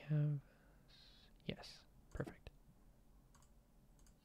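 One spoken word, then a few faint, short clicks and a brief breathy hiss over low room noise.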